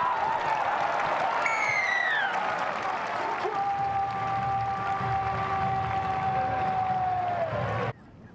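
Stadium crowd clapping after a try. About a second and a half in, a pitched sound falls in pitch; from about three and a half seconds a long steady tone is held, then sags in pitch just before the sound cuts off.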